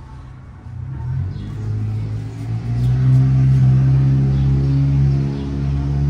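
A loud, low engine-like hum starts about a second in and holds a steady pitch that rises a little in steps.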